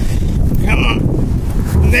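Strong gusting wind buffeting the microphone: a loud, continuous low rumble, with a brief higher-pitched noise just under a second in.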